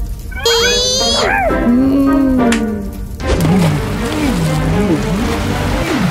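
Wordless cartoon voice vocalizing in sliding, swooping pitches. About three seconds in, a loud steady rushing noise starts, with a wavering, warbling cry under it.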